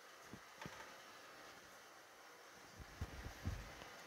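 Quiet kitchen room tone with a few faint, dull knocks and bumps, two soon after the start and a cluster about three seconds in, from plating by hand at a stainless steel counter.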